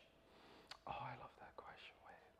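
Faint whispered speech, a person murmuring under their breath about a second in; otherwise near silence.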